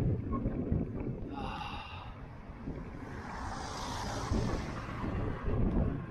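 Wind buffeting the microphone of a camera on a moving bicycle, a low gusty rumble. Around the middle a broad hiss swells and fades: a car overtaking on the road.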